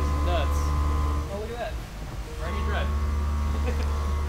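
Steady low hum of shop machinery and fans, with steady tones riding on it; it dips for about a second in the middle, and faint voices come through in the background.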